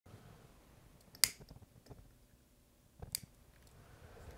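A handheld lighter struck twice, two sharp clicks about two seconds apart with a few faint ticks between, lighting a tealight.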